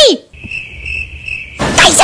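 Crickets chirping as a comic sound effect: a steady high trill lasting about a second. A loud, high-pitched shouting voice cuts off just at the start and another begins near the end.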